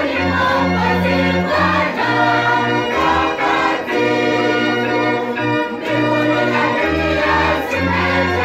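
Large choir of schoolchildren singing a hymn, conducted, with deep sustained bass notes underneath that change about once a second.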